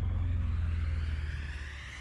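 A deep, sustained bass boom from an edited soundtrack, fading over the two seconds, with a faint rising whoosh above it.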